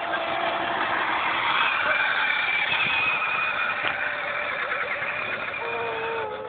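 A child's battery-powered Power Wheels ride-on quad driving: the steady whine of its electric motor and gearbox with its plastic wheels rolling on concrete.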